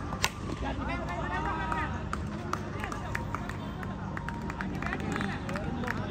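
Tennis-ball cricket: one sharp crack of the bat on the ball near the start, then players and spectators shouting and calling out.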